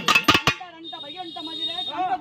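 A few quick, sharp strokes on a pambai drum in the first half second, then a man's voice calling out with a wavering pitch over a thin, steady high tone.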